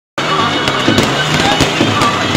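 Firecrackers going off in rapid, irregular cracks over a loud, continuous din.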